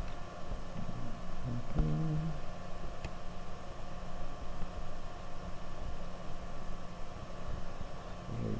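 Steady electrical hum and low rumble of the recording's background noise. A brief low voiced murmur comes twice, about one and two seconds in.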